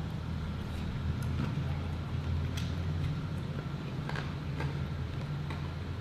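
Steady low background hum, with a few faint clicks of a spoon in a plastic cup of shaved ice as a man eats.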